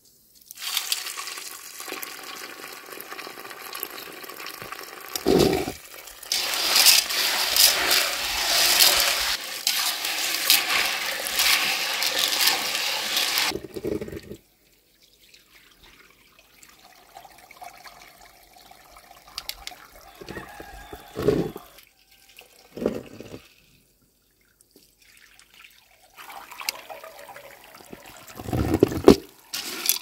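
Water from a garden hose running into an aluminium pot of dried beans, splashing over the beans, loudest in the first half and coming back near the end. A few dull knocks of the pot come in between.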